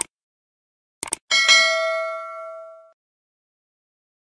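Subscribe-button sound effect: a click, then a quick double click about a second in, and a bright bell ding with several tones that rings out and fades over about a second and a half.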